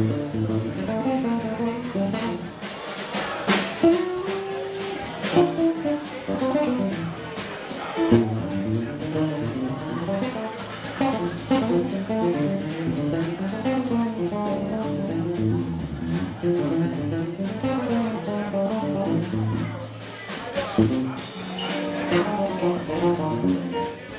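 Live jazz: an electric bass guitar plays a moving melodic line over a drum kit keeping time on the cymbals.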